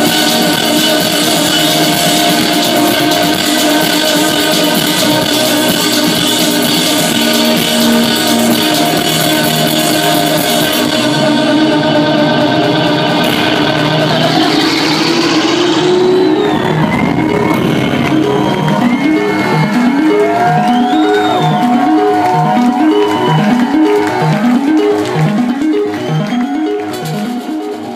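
Live electronic band music through a club PA. The full band with drums and cymbals plays until about eleven seconds in, when the drums and high end drop away, leaving held keyboard tones and a rising glide. Then comes a repeating figure of short falling notes, about three every two seconds, with wavering higher tones over it.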